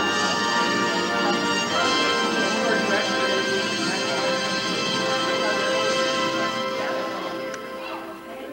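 Recorded music played from a CD over the room's sound system: long held, layered tones that change chord every few seconds and drop away near the end.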